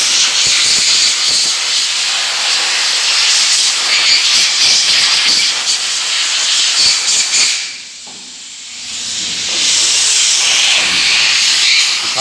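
A compressed-air blow gun hisses loudly as it blasts air through a washed diesel engine part, clearing out leftover dust and cleaning fluid. The air cuts off for about two seconds a little past the middle, then starts again.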